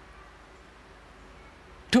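Quiet pause filled by a faint, steady hiss of room tone and recording noise, then a man's voice starts speaking again near the end.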